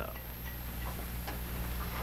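Steady low hum and hiss of an old television film soundtrack, with a few faint ticks about half a second apart.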